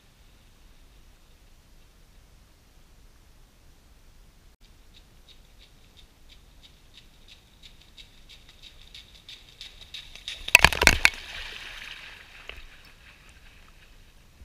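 A runner's feet splashing through ankle-deep floodwater on a trail: a steady run of footfall splashes from about five seconds in, growing louder as he nears. The loudest splashes come just before eleven seconds as he runs past, followed by a couple of seconds of water sloshing and spray settling.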